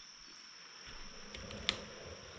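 Faint, steady high-pitched insect chirring, like crickets, with a single light click about one and a half seconds in.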